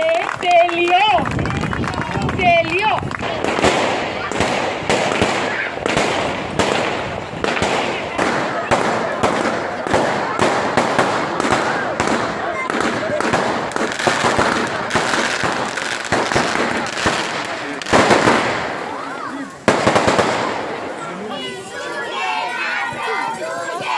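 Firecrackers going off in a rapid, irregular string of sharp cracks for most of the time, with a louder burst near the end, over the voices of a crowd.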